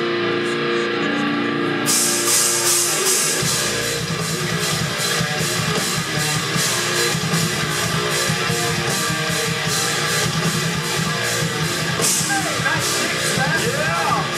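Live rock band playing the instrumental opening of a song: an electric guitar alone at first, drums with cymbals coming in about two seconds in, and bass and the full band about a second later, then playing on with a steady, driving beat.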